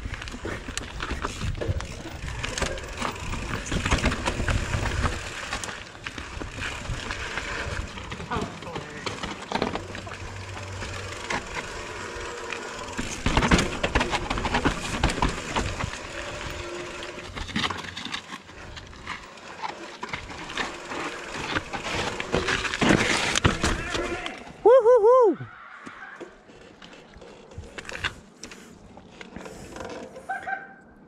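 Mountain bike descending a rocky forest trail: tyres rumbling and crunching over rock slab and dirt, with frequent knocks and rattles from the bike. About 25 seconds in the rolling noise drops away and a brief, loud, rising-and-falling squeal sounds, after which it is quieter.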